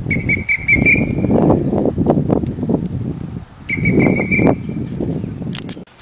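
A dog-training whistle blown in two runs of quick pips, each about a second long: one at the start and another about four seconds in. Under them runs a loud low rumble.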